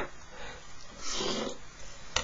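Drawing instruments handled on a drawing board: a sharp click at the start, then a short scraping rustle about a second in as a plastic set square is moved across the paper.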